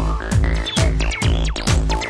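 Acid hardcore rave track: a kick drum hits about twice a second under a squelchy acid synth line whose notes slide up and down in pitch.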